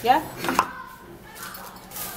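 A single light knock from a plastic petroleum-jelly tub being handled as its lid comes off, followed by faint handling noise.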